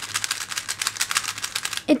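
Gans 356 3x3 speedcube being turned rapidly by hand: a quick, even run of light plastic clicks as the layers turn past each other, turning fluidly.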